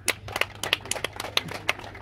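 Scattered, uneven hand claps from a few people, about eight sharp claps a second, over a steady low electrical hum from the sound system.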